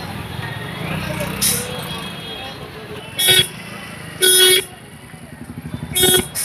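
Vehicle horn sounding twice, a short toot about three seconds in and a longer one about a second later, over the noise of a street crowd and voices.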